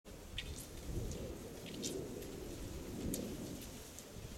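Wind rumbling unevenly on the microphone, with a few short, high chirps scattered through it.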